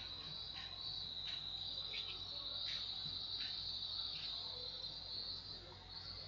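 A faint, steady high-pitched trill like insects, with soft pulses about every two-thirds of a second over low room noise.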